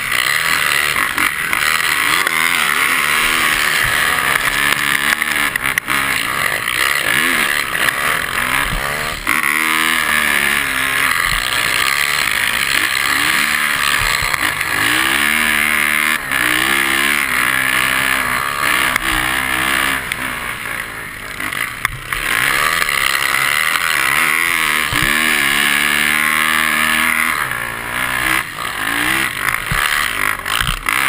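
A 450 cc four-stroke single-cylinder dirt-bike engine on a snow bike, revving hard under race load, its pitch climbing and dropping again and again through gear changes and turns. A steady rushing noise runs underneath.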